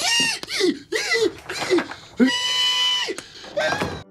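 A man squealing in a high falsetto like a pig: several short squeals, then one long held squeal a little after two seconds in.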